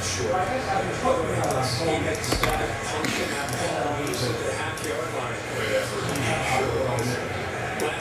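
A man talking, his words not made out, with a single sharp click about two and a half seconds in.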